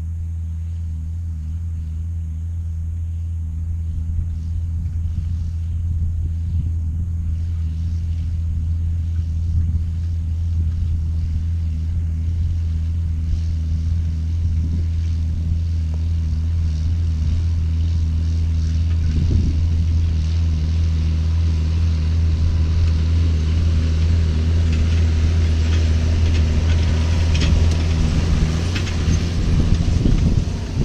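John Deere 7610 tractor's six-cylinder diesel engine pulling a no-till drill, a steady low drone that grows louder as it approaches. Near the end more hiss and a few clicks come in as it draws close.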